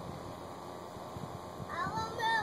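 A high-pitched vocal call, its pitch arching up and down, starts near the end over a faint outdoor background.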